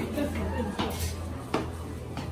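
Dishes and cutlery clinking in a busy restaurant: a few sharp clinks over a steady low hum.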